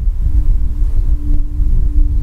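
A loud low rumble with one steady held tone over it, and no speech.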